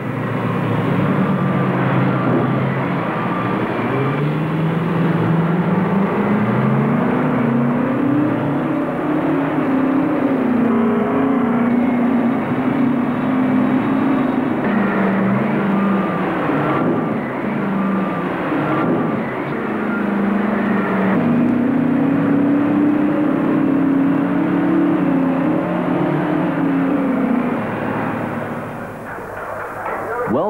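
Heavy diesel engines of open-pit mining equipment, a loader and haul trucks, working. The engine note rises and falls over a few seconds at a time and eases off near the end.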